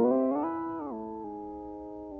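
Held note from the sampled 'Intimate Piano' layer of Fluffy Audio's Aurora Kontakt library, its pitch stepped up in a few jumps and back down as the pitch control is turned, then sustaining lower and fading away.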